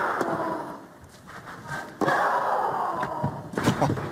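Tennis match sound: a few sharp racket-on-ball hits over arena crowd noise, the crowd noise fading then starting again abruptly about halfway through.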